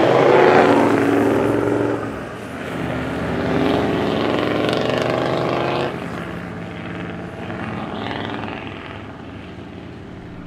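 Four-wheel-drive vehicles driving past one after another through soft beach sand, engines revving with climbing pitch. The first pass is loudest about half a second in, a second engine climbs from about two and a half to six seconds, and then the sound fades as the convoy pulls away.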